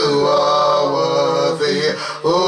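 A woman's voice chanting into a handheld microphone in long, held tones, with a short break near the end.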